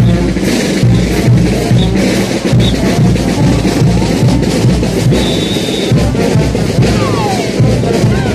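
Loud festival band music for Puno street dancing, driven by a bass drum and snare drum keeping a steady beat.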